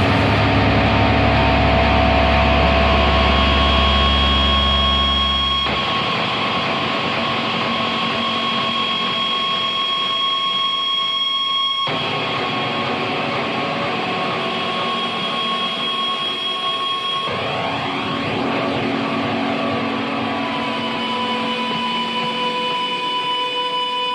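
Harsh noise music: a loud, dense drone of hiss and sustained feedback-like tones, with a deep low hum under it for the first six seconds, and the texture cutting abruptly to a new layer about six, twelve and seventeen seconds in.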